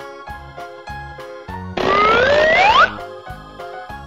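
Cheerful children's background music with steady keyboard notes. About two seconds in, a loud cartoon sound effect cuts over it for about a second: a rising whistle-like glide over a hiss.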